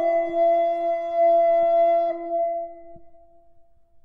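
Renaissance early-music ensemble holding a final chord of two sustained notes an octave apart, which fades out about three seconds in at the end of a piece.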